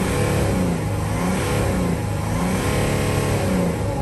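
Mercedes Sprinter turbo-diesel engine revved in park from inside the cab, its pitch rising and falling several times as the revs climb to near 4000 rpm. With the limp-mode codes (P0299 turbo underboost, P2610) cleared, it now revs freely past the 3000 rpm cap it was held to in limp mode.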